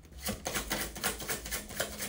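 A deck of tarot cards being shuffled by hand, the cards flicking against each other in a quick, even run of soft clicks that starts about a quarter second in.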